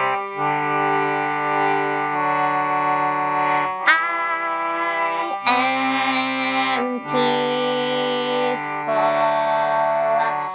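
Harmonium playing held, reedy chords that change every second or two. From about four seconds in, a woman's voice sings held notes over it.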